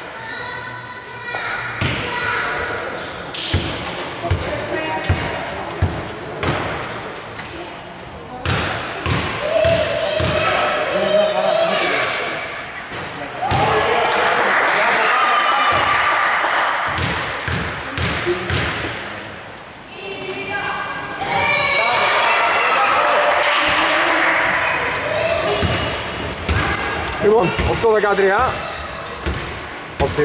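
Basketball being dribbled on a wooden indoor court, a run of irregular bounces that echo in the large hall, with voices calling out over it.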